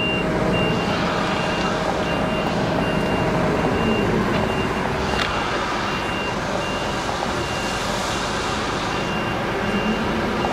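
Lorry's reversing alarm beeping at an even rhythm in one high tone as the truck backs up, over the steady running of the truck's diesel engine.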